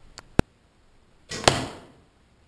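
An arrow shot from a bow: two sharp clicks, then about a second and a half in a brief rush of the arrow ending in a loud smack as it strikes the cardboard backstop behind the candle.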